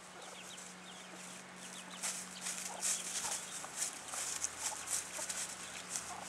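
Hen clucking in low calls, with chicks peeping faintly. From about two seconds in, loud irregular crisp rustling and crackling, typical of the hen scratching through dry grass and leaves.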